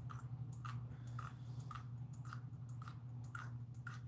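Faint, regular clicking, about two clicks a second, over a low steady hum.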